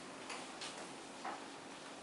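A whiteboard being wiped clean: a few faint, short rubbing strokes against the board.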